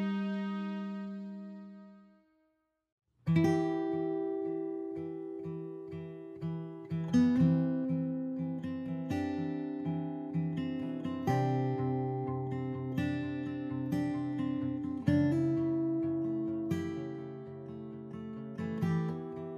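Background music: a held chord fades out over the first two seconds, then after a brief silence an acoustic guitar instrumental starts about three seconds in, with plucked notes on a steady pulse.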